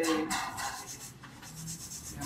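Acrylic nail brush stroking and pressing acrylic onto a fingernail: soft, scratchy rubbing, strongest in the first second and then fading.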